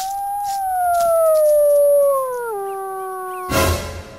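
A single long howl that rises, holds and slowly falls, then drops in one step about two and a half seconds in. It stops near the end as a louder, pulsing sound cuts in.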